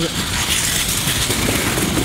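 A scooter fitted with over a hundred small scooter wheels on two long axles, rolling across a wooden skatepark floor and onto a ramp: a steady, dense rolling rumble and clatter.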